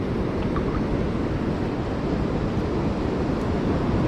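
Steady rushing of ocean surf breaking on a beach, mixed with wind rumbling on the microphone.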